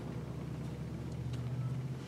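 Steady low background hum, with a couple of faint light clicks about one and a half seconds in.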